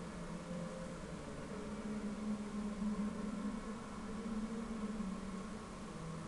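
Steady background noise of a football broadcast's stadium ambience: an even hiss with a low hum.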